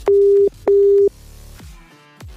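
Telephone ringback tone of an outgoing call ringing at the far end: one double ring, two steady beeps of about 0.4 s each with a short gap between, over quiet background music.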